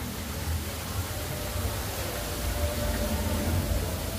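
Steady hiss of falling water from an artificial cave waterfall over a continuous low rumble, with a faint held tone in the second half.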